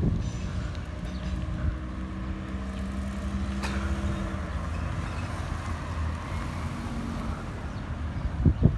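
A motor running steadily with a low hum, and a single sharp click about three and a half seconds in.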